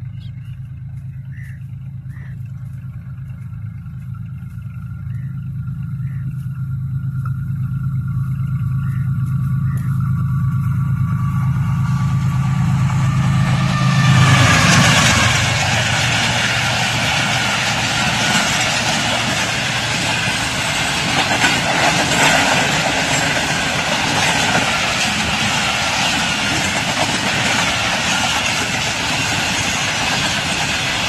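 GEU-40 diesel-electric locomotive approaching at speed, its engine a steady low drone growing louder until it passes about fourteen seconds in. After that the passenger coaches rush past close by, a loud, continuous rumble and clatter of wheels on rails.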